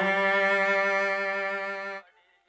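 Film background score: bowed strings holding one sustained note, fading slightly and cutting off sharply at the end.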